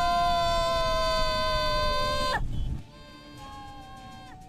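A young boy's long, drawn-out scream during a tandem paraglider flight, his pitch slowly falling, over wind rumble on the microphone. The scream breaks off about two and a half seconds in.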